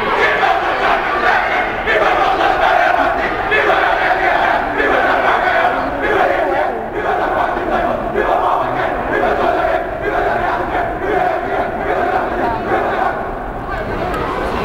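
A line of fraternity new members chanting loudly in unison, in long sustained phrases with brief breaks, against crowd noise.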